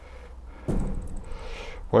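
Greenhouse door being closed against its Klimat-100 thermal actuator piston: a continuous rustling, scraping noise of the door and its fittings moving, starting about two-thirds of a second in.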